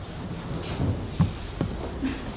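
Low rumbling background noise of a crowded room, with faint murmuring and two short knocks, a little over a second in and about half a second later.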